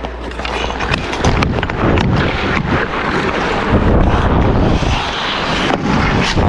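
Ice-skate blades scraping and gliding on rink ice, with wind rushing over the microphone as the player skates. A few sharp clicks of stick or puck on the ice, one near the end.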